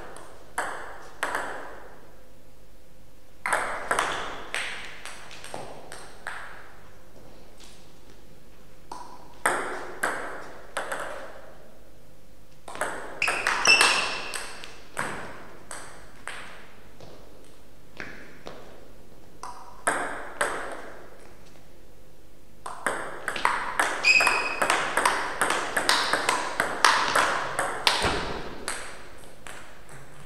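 Table tennis ball clicking off rackets and the table in several short rallies, quick series of sharp ticks separated by pauses, with the longest and fastest exchange near the end.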